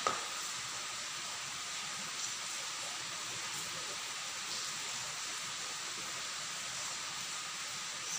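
A steady hiss with no other sound apart from a brief click at the very start: the recording's background noise during a pause in speech.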